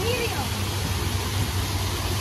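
Splash-pad fountains and spray features pouring water steadily into a shallow pool, a continuous even rush of falling water.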